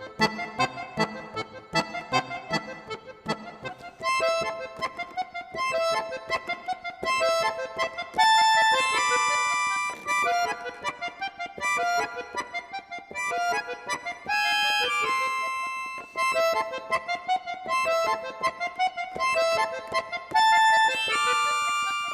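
Concert accordion playing a classical piece: quick staccato repeated notes and short chords alternating with held, bright high chords.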